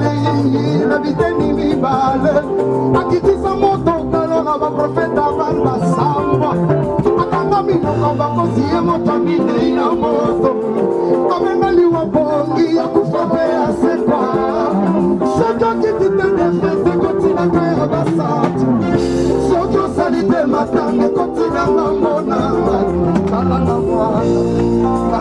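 Live Congolese band music with guitar and a steady bass line, with singing over it, played loud and without a break.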